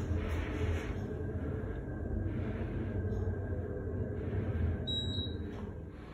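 Elevator cab running with a steady low rumble and hum, with a brief high-pitched beep about five seconds in. The rumble fades near the end.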